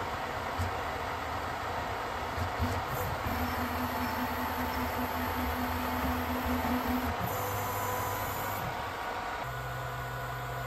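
A small desktop CNC mill's axis drives moving its table and spindle during a touch-probe routine. Over a steady low hum, a low motor whine holds for about four seconds, then a brief high whine follows as the move changes.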